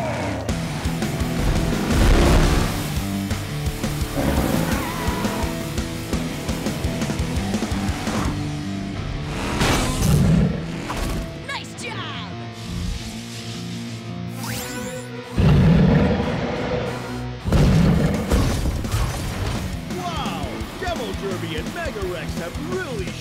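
Cartoon action score with crash and boom sound effects of monster trucks smashing: loud impacts about two seconds in, near ten seconds, and twice around sixteen to eighteen seconds.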